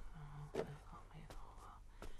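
An elderly woman quietly murmuring a Buddhist sutra chant on one steady low pitch, broken syllable by syllable, with two soft knocks.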